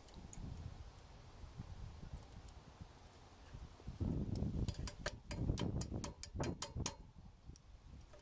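Pliers working a rusted steel cotter pin out of a boat-trailer keel-roller shaft: a run of sharp metal clicks and scrapes from about halfway in. Under it is a faint low rumble.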